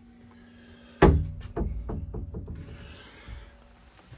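Wooden cupboard doors and a storage lid being handled: one sharp wooden knock about a second in, then several lighter knocks and wood rubbing that fade out.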